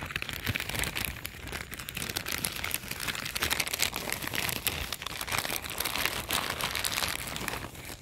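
Dense, close crinkling and rustling handling noise right at the phone's microphone.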